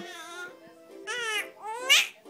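Baby vocalizing happily in two short rising squeals, the second louder and higher near the end, over a faint steady music tune.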